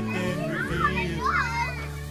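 Young children's voices calling out as they play, with high cries rising and falling from about half a second to a second and a half in, over a song's backing music.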